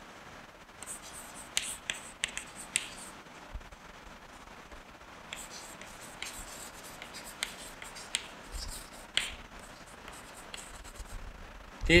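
Chalk writing on a blackboard: sharp taps and short scratches as each letter is stroked, coming in clusters with brief pauses between words.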